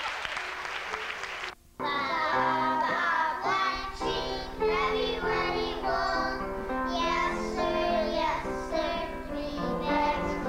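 Applause for about the first second and a half, then, after a brief break, a group of young children singing a song with instrumental accompaniment.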